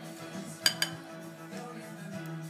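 Two quick clinks of a utensil against a glass mixing bowl, a fraction of a second apart, over steady background pop music.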